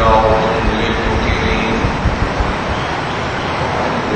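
A man's voice lecturing into a microphone, a short phrase in the first second, then a pause filled only by steady background hiss and rumble.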